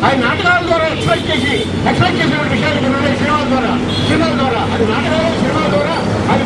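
A man speaking into a corded hand-held microphone, his voice amplified, over a steady low hum.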